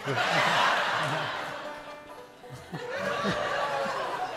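Audience laughter with a few notes and chords from a banjo and acoustic guitars. The laughter is loudest at the start and fades, then swells again near the end.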